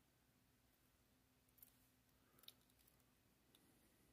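Near silence, with three faint clicks as a small die-cast metal toy truck is turned over in the fingers.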